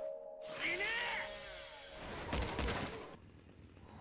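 Soundtrack of an anime episode: music with whooshing and crashing effects. A sudden burst comes about half a second in, sweeping sounds follow, and heavy hits land about two and a half seconds in before it quietens near the end.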